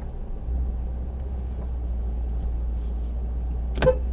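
Mercedes-AMG E63 S twin-turbo V8 idling at a standstill, a steady low drone heard inside the cabin.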